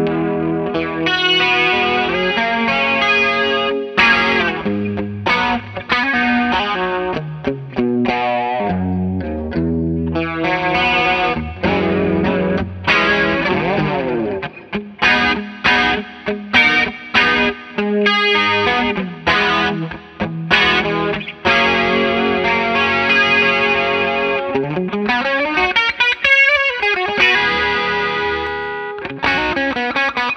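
Electric guitar, a Gibson Les Paul Standard, played through a Bondi Effects Squish As compressor pedal into a Fender '65 Twin Reverb amp: continuous chords and lead lines, with sliding pitch sweeps about halfway through and near the end.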